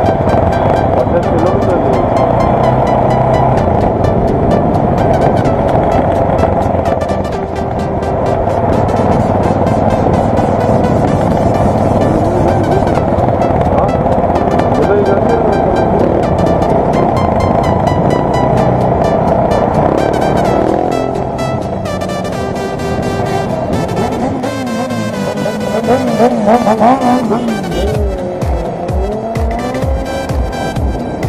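Electronic dance music with a steady beat, mixed over the engine and wind noise of a motorcycle riding. The beat turns heavier with deep bass pulses near the end.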